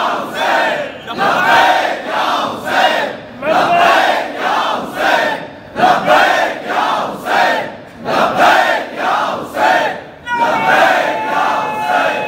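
Crowd of men chanting a slogan in unison, in loud rhythmic shouts about two a second. A steady high tone joins in near the end.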